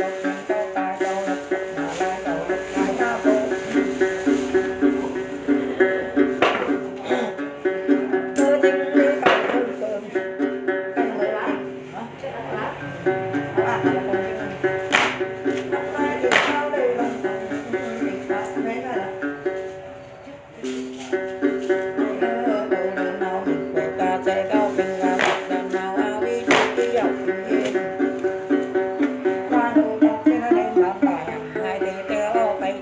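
Đàn tính, the Tày-Nùng long-necked gourd lute, plucked in a quick, steady repeating pattern as the accompaniment to Then ritual singing. The playing drops away for a moment about twenty seconds in, then resumes.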